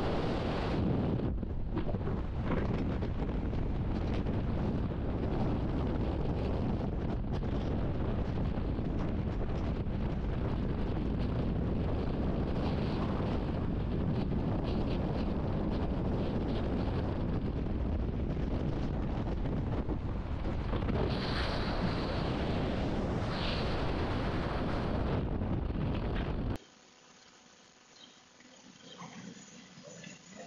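Freefall wind rushing over a skydiver's camera microphone as a steady, loud noise, cutting off suddenly near the end.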